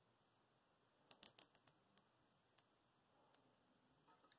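Nylon cable tie being ratcheted tight by hand: a quick run of small sharp clicks a little over a second in, then two single clicks.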